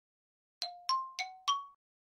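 Four quick metallic dings from an edited-in title-animation sound effect, about a third of a second apart. Each is at a slightly different pitch and rings only briefly.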